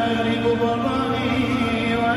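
Live band music with a male lead voice singing long, wavering held notes over guitars and keyboard, recorded from within the audience.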